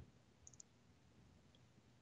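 Near silence in a pause of a call, with two faint clicks about half a second in.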